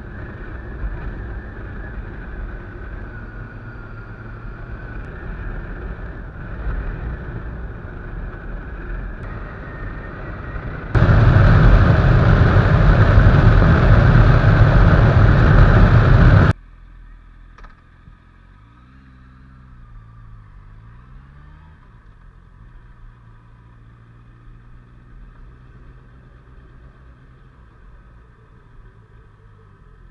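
A motorcycle being ridden, its engine running under a steady rush of wind on the camera microphone. About eleven seconds in, a much louder blast of wind noise at highway speed starts and stops abruptly. After that the engine is quieter, its pitch falling and rising as the bike slows.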